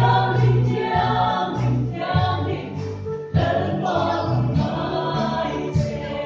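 A mixed choir of women's and men's voices singing a hymn in parts, with a brief break between phrases about three seconds in before the singing resumes.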